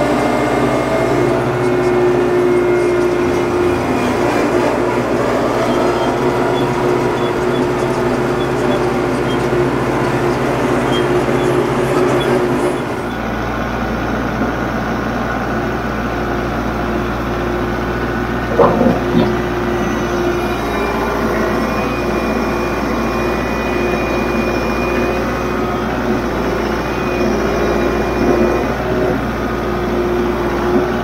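Kubota MX5400 utility tractor's four-cylinder diesel engine running steadily while it works gravel. About 13 seconds in, the sound switches to a closer, from-the-seat perspective. A short clatter comes about 19 seconds in.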